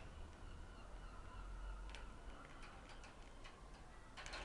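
Faint outdoor background with a low rumble, a faint thin whistle-like tone about a second in, and a few soft ticks later on.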